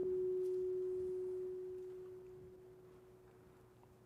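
A single held organ note, one steady pure pitch, fading slowly away until it is nearly gone.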